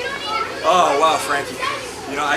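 Children's voices at play, with calls and shouts.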